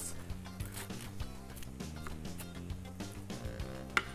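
Chef's knife chopping fresh spinach on a wooden cutting board: a run of quick, irregular chops, over soft background music.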